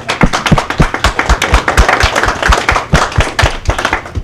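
A small audience applauding, with one set of loud claps close to the microphone at about four a second over the general clapping, dying away near the end.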